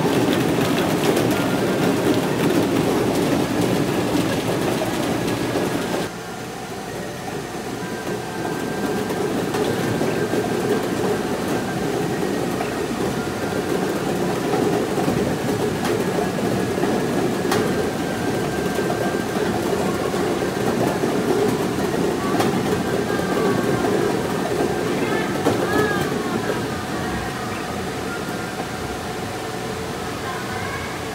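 The air blower of a ball-blowing play machine runs with plastic play balls clattering around the drum, then cuts off suddenly about six seconds in. After that a steady background din continues, with faint electronic tones.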